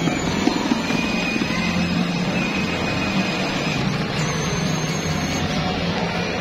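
Music playing over a steady background din while a child's battery-powered ride-on toy motorcycle drives along.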